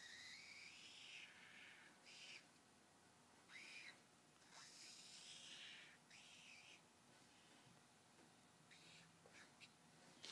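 Faint squeaking and scratching of a marker pen across flip-chart paper, in a run of short strokes with squeaky rising and falling tones, as a diagram is drawn and shaded.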